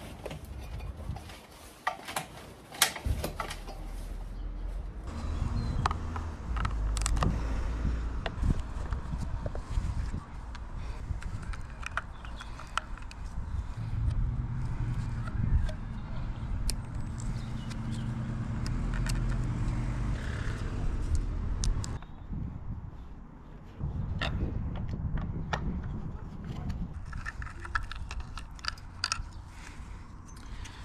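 Scattered clicks, knocks and rattles of gloved hands and a screwdriver working on a plastic outdoor junction box and its wiring, over a low rumble that comes and goes.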